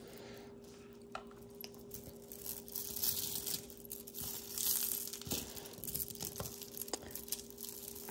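Beaded bracelets and necklaces being handled and pulled apart on a cloth-covered table: soft rustling with scattered light clicks of stone beads, over a faint steady hum.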